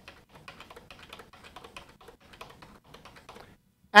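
Computer keyboard keys struck in a quick run of faint clicks, several a second, deleting blank lines from code in a text editor. The clicks stop about half a second before the end.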